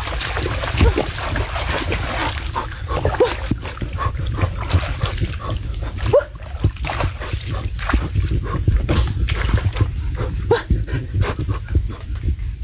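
Hands splashing and sloshing in shallow muddy water while digging in mangrove mud, in many short irregular splashes, with a few brief voice-like calls now and then.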